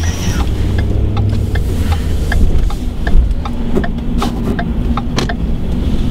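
Inside the cab of a moving Ford pickup truck: steady low road and engine rumble, with scattered short knocks and clicks throughout.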